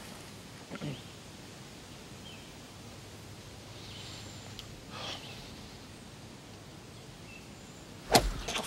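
Quiet outdoor ambience: a low steady hiss, with faint brief sounds about a second in and again about five seconds in.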